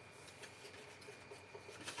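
Faint rubbing and rustling of folded cardstock as hands press it flat and pick it up.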